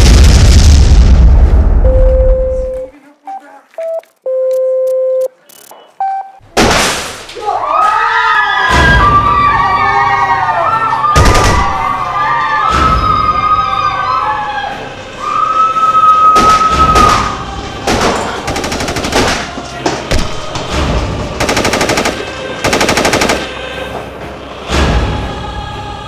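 A film soundtrack: an explosion with a deep rumble for the first few seconds, then a few isolated beep-like tones. Dramatic music with a wavering melody follows, and a run of sharp hits like gunfire comes in the last several seconds.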